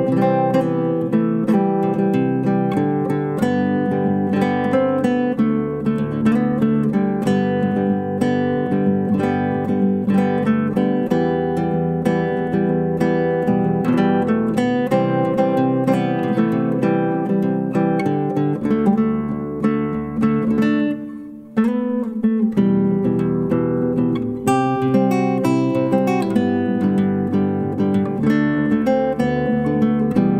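Solo nylon-string classical guitar, plucked by hand in a continuous flowing piece. The notes break off briefly a little over two-thirds of the way through, then start again with a sharp attack.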